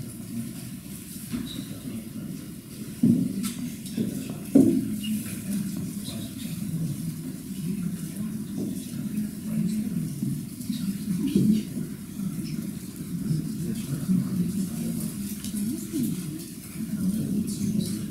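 Low, indistinct murmur of voices in a hall, with two knocks a few seconds in.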